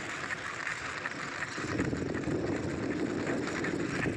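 Steady wind and road noise of a moving bicycle ride, with a louder low rumble coming in about a second and a half in.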